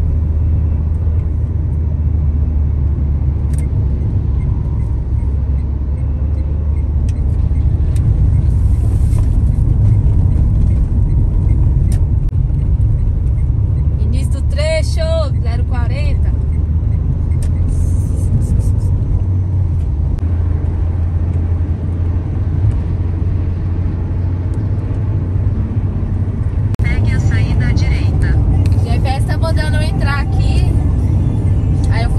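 Steady low rumble of a car driving at highway speed, heard from inside the cabin: engine and tyre noise on the road. Brief voice-like sounds come in about halfway through and again near the end.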